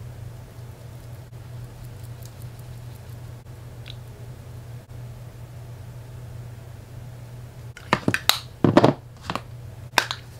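A steady low hum, then about eight seconds in a few loud, short rustling and clattering noises of makeup products and packaging being handled.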